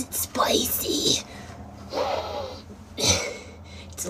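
A voice whispering short breathy phrases, matching the on-screen words "why is it spicy" and "it's a little addicting", over a low steady hum.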